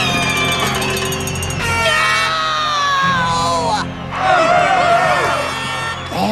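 A boy's long anguished scream that slides down in pitch, over music and crowd noise.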